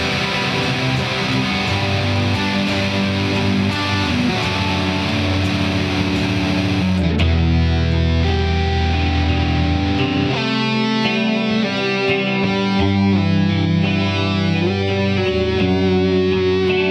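Electric guitars, one a Fender Stratocaster, playing a rock song. For the first half the chords are dense and full. From about ten seconds in, a picked single-note melody stands out over them.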